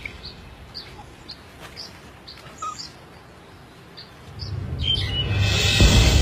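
A bird chirping repeatedly in short high notes, about twice a second, over faint background music. About four and a half seconds in, the music swells back up loudly and covers the chirps.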